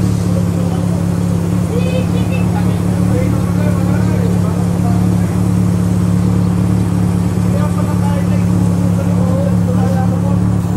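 A loud, steady low hum that never changes in pitch or level, with faint voices talking in the background.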